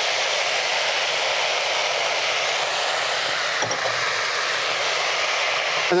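Beef stir-fry sizzling in a hot frying pan just after the sauce and vegetables have gone in: a loud, steady hiss of boiling sauce and steam.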